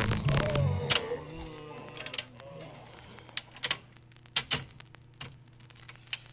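A loud burst of noise in the first second as the earlier sound cuts away, then a low steady hum with sharp separate clicks, a couple a second, from a Seeburg Select-o-Matic jukebox's record-changing mechanism working before a record plays.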